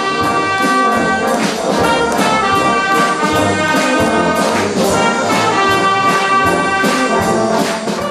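A brass band, euphoniums and tubas among it, playing full, held chords with regular accents on the beat.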